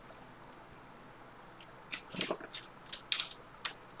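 Trading cards being handled and flipped onto a stack: a run of short, sharp card snaps and clicks starting about halfway through.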